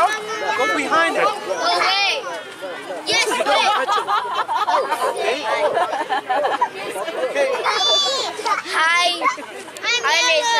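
Young children chattering and calling out over one another, with higher-pitched calls near the end.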